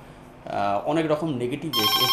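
A man talks briefly, then about three-quarters of the way in a telephone starts ringing with a steady electronic tone: an incoming call to the studio.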